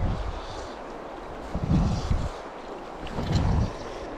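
Wind buffeting the microphone in two gusts, about a second and a half in and again near the end, over the steady rush of a clear, fast-flowing river.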